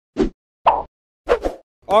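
Short, clipped spoken words, about four of them, each cut off by a brief silence.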